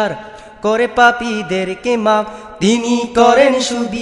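Unaccompanied male voice of a Bengali Islamic gojol singing wordless, chant-like vocalising in two long phrases, each sliding up into a held note.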